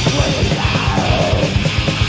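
Old-school thrash metal band playing live: distorted guitars, bass and fast drumming under shouted vocals, on a lo-fi cassette demo recording.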